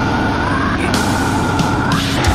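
Heavy metal music playing: a held high tone that bends slightly in pitch sits over a dense, heavy low end.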